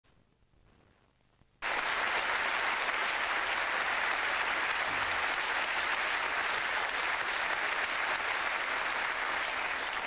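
Studio audience applauding, starting suddenly about a second and a half in and holding steady.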